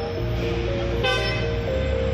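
A brief car horn toot about a second in, over background music with a melody and a steady bass.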